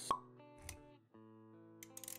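Animated-intro sound effects over background music: a short pop just after the start, the loudest sound, then a low thump about two-thirds of a second in. After a brief break the music comes back as held notes, with a few clicks near the end.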